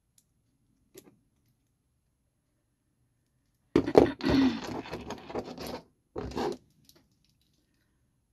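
Handling noise on a craft table. A faint click about a second in, then near the middle a sudden clatter as a plastic weeding tool is put down, running into about two seconds of rustling and handling of paper and small pieces, and a shorter burst of handling a little later.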